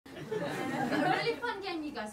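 Only speech: a woman talking into a stage microphone.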